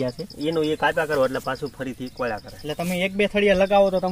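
Men talking in the field, with a faint, high, rapidly pulsing insect trill behind the voices at the start and again near the end.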